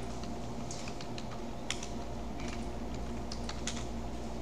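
Computer keyboard typing: irregular, scattered keystrokes as a login name and password are entered at a Linux console prompt.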